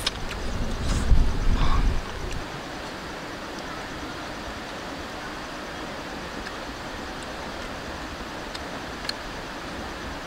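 Steady outdoor background hiss. In the first two seconds a louder low rumble with a few sharp clicks, like wind on the microphone, stops about two seconds in.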